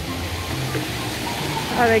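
Small artificial rock waterfalls running, a steady rushing hiss, with background music under it.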